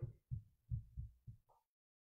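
Four or five faint, short low thuds spaced roughly a third of a second apart, followed by near silence.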